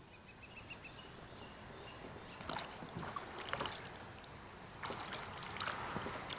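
Water splashing and sloshing in two bursts, about two seconds in and again near the end, as a goldfish is put into the water.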